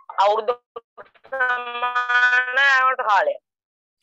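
A voice holds one long sung note for about two seconds, with a slight wobble in pitch. It comes just after a brief burst of voice at the start.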